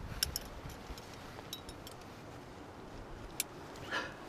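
Metal climbing hardware, carabiners and cams on a harness rack, clinking in a few scattered light clicks over a faint low rumble.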